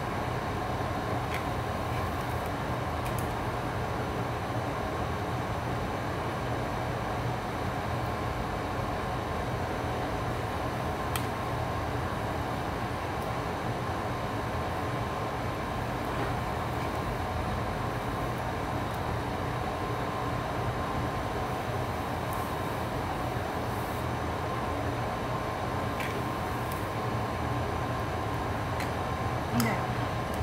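Steady hum of a wall-mounted air conditioner running, even and unchanging, with a few faint clicks.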